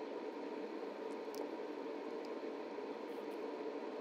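Faint, steady room noise, an even hiss with no distinct events. It cuts in and out abruptly at the edges of a time-lapse edit.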